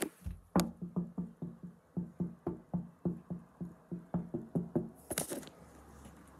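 Light knocks repeated evenly, about four a second for some four seconds, each with a short low ring, followed by a brief rustle near the end.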